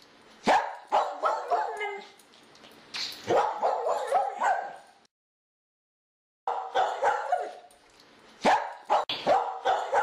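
A dog barking and yipping in quick, short bursts; the barking stops for about a second and a half near the middle, then starts again.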